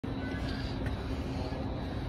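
Steady background hum with faint, distant voices.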